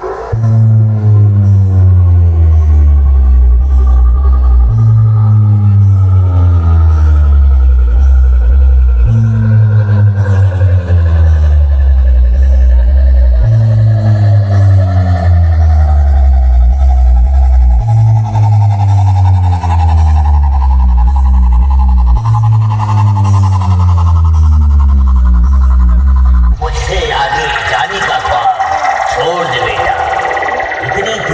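A towering DJ sound-box stack, loud, playing a bass-heavy sound-check track. Deep bass notes step down in pitch in a phrase that repeats about every four and a half seconds, under a slowly rising tone. Near the end it switches suddenly to a brighter, busier sound.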